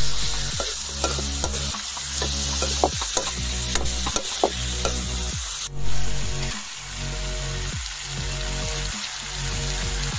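Pork pieces sizzling in hot oil in an iron kadai. A metal ladle scrapes and clinks against the pan as they are stirred, most busily in the first half.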